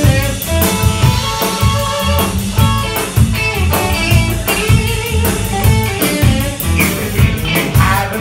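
Live blues band playing an instrumental stretch between vocal lines: electric guitars over a drum kit keeping a steady beat.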